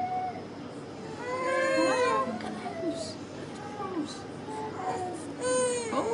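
A toddler crying in a string of short cries, loudest in a longer cry about a second in and again in a short cry near the end, while a dressing is wrapped onto the injured finger.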